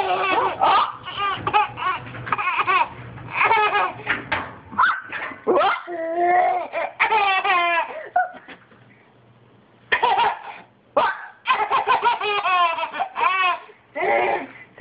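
A baby laughing hard in repeated high-pitched bursts, with a short lull a little past halfway before the laughter starts again.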